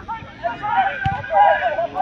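Several voices shouting and calling at once, with a single thump about halfway through.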